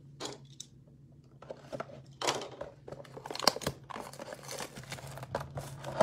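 A cardboard blaster box of trading cards being torn open by hand, then its wrapped packs pulled out. Scattered tearing and crinkling with a few sharp clicks begins about a second and a half in.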